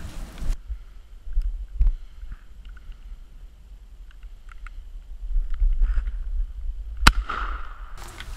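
A single shot from a Mossberg 500 .410 pump-action shotgun about seven seconds in: a sharp crack with a short echo after it. Before it come a few faint clicks and handling sounds over a low rumble.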